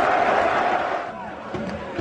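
Football stadium crowd noise, a steady din that drops away about a second in.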